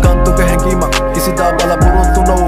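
A Sinhala hip-hop song with vocals over a beat and deep bass, the low bass notes sliding down in pitch about once each second or two.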